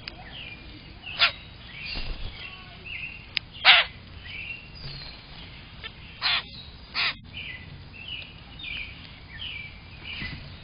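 Common grackles, adults and young, calling: many short chirps that slide downward, with four louder, short, sharp sounds about one, four, six and seven seconds in.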